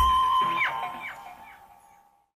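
Live forró band music ending: one held note rings on and fades out, with a few short sliding notes over it, dying away to silence.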